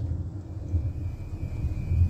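Steady low background rumble, with a faint thin high tone joining about half a second in.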